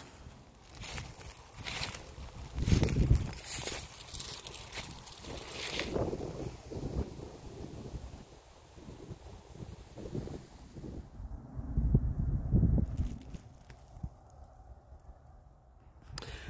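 Wind buffeting the microphone in low rumbles, strongest about three seconds in and again near twelve seconds, with scattered rustling and handling noise.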